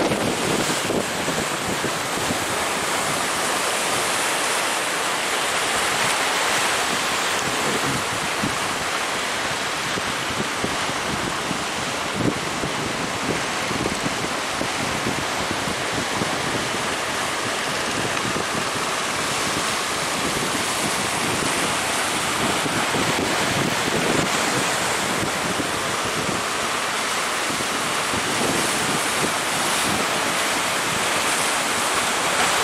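Steady rush of rough sea surf breaking, with wind gusting on the microphone.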